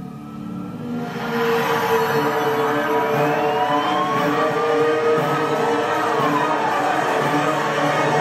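Tense television-drama score swelling about a second in: a noisy whoosh over sustained tones, with gliding pitches that rise and then fall.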